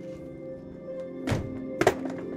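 Background music with held notes, and two thunks on a caravan door about half a second apart in the second half, the second louder, as it is pushed from inside.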